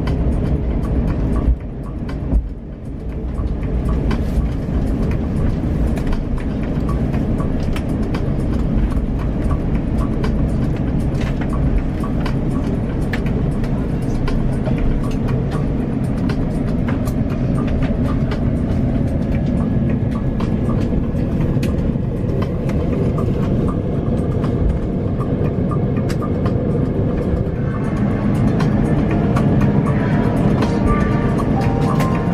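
Steady low rumble of an Airbus A350 cabin during the landing rollout and taxi, with two knocks in the first few seconds. Background music plays over it.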